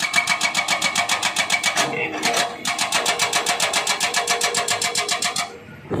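Excavator-mounted hydraulic breaker hammering rock in rapid, even blows, about ten a second, with a steady ringing tone over them. It runs for nearly two seconds, pauses, gives a short burst, then hammers steadily again and stops shortly before the end.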